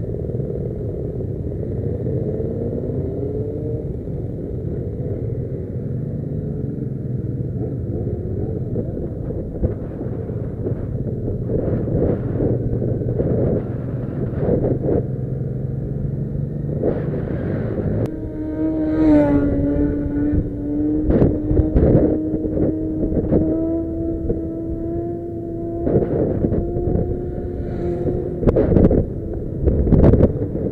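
Motorcycle engine running, heard from a camera riding on a moving motorcycle in a group of bikes. In the first few seconds the engine note rises several times as it accelerates. From about 18 s in it settles to a steadier, slowly rising hum at road speed, with repeated gusts of wind noise hitting the microphone.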